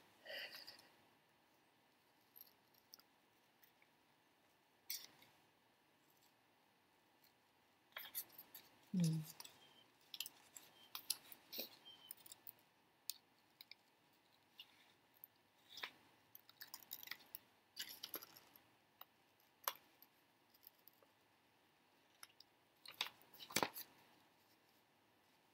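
Paper scissors snipping through a sheet of printed paper in short, irregular cuts with pauses between, as small collage pieces are cut out. A short falling hum of voice about nine seconds in.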